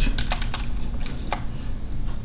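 About half a dozen light clicks of computer keyboard keys being tapped, spread over the first second and a half, over a low steady hum.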